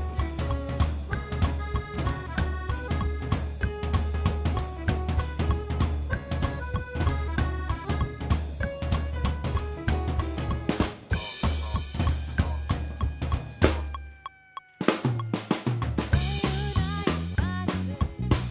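Acoustic drum kit with Sabian cymbals played busily, snare, bass drum and cymbals, over accompanying melodic music with a steady bass line. About fourteen seconds in, a held tone slides down and everything stops for under a second, then the drums and music come back in.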